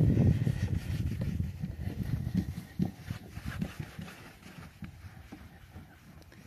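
Microfiber towel wiping wax off a car's painted door panel close to the microphone, with irregular low rubbing and handling knocks. It is loud at first and fades over the first few seconds, with a few separate knocks in the middle.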